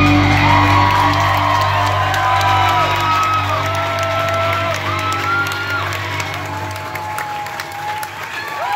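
A live band's last held chord ringing out and fading away near the end, the close of the song, while the audience whoops, cheers and begins to clap.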